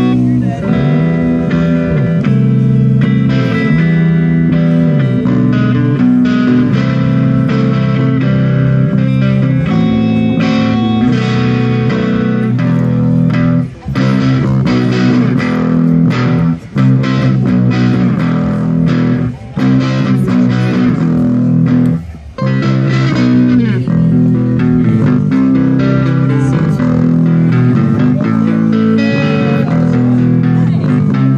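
Live instrumental rock played on electric guitar and bass guitar through small amplifiers. The playing runs continuously except for a few brief stops around the middle.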